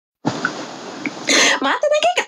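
A woman coughs once, a short sharp burst about a second in, then starts to speak. Before the cough there is a steady hiss.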